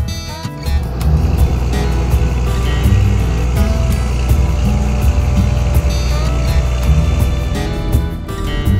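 Tractor diesel engine running steadily under load while pulling a hay wheel rake; it comes in loudly about a second in. Background music plays over it.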